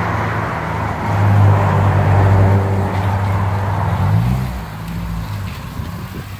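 A car engine running at low revs close by, a steady low hum that grows louder about a second in and changes pitch about four seconds in before easing off.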